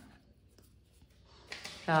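Faint rubbing of yarn being pulled through crochet stitches with a yarn needle, in an otherwise near-silent pause; a woman's voice comes in near the end.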